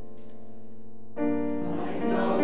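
Accompaniment of a church choir anthem between sung phrases: a held keyboard chord, with a fuller chord coming in about a second in.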